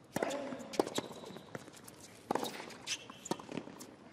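Tennis ball being served and rallied on a hard court: a series of sharp racket hits and ball bounces, one about every second or less.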